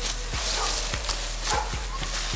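Dry leaf litter crunching and rustling under a scuffle on the ground, with a dog barking.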